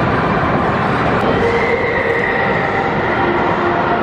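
Steel roller coaster train running along its track: a loud, steady rumble with a few faint high tones over it.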